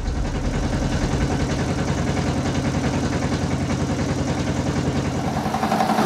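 Motorboat engine running steadily with a fast, even pulsing, together with the rush of water along the hull. The low pulsing thins out just before the end.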